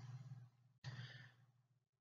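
Near silence with two faint breaths close to the microphone, one at the start and one about a second in.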